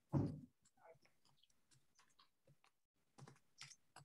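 A person eating a bite of soft ashed goat's cheese: a short low mouth sound just as it goes in, then faint, scattered clicks of chewing, a few more of them near the end.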